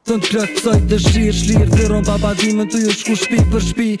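A male rapper raps in Albanian over a hip hop beat, with deep bass notes that slide down in pitch. It starts abruptly as playback resumes.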